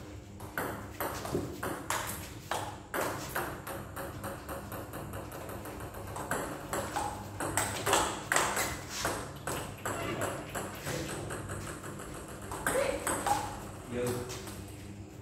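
Table tennis balls clicking off rubber paddles and bouncing on the table in quick succession, during backspin serve practice.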